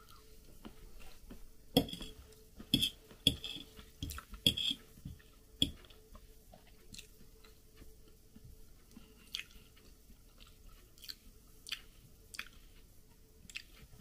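Chewing and mouth sounds of a person eating, with short sharp clicks of a fork on a plate, most frequent in the first six seconds and sparser after that. A faint steady hum runs underneath.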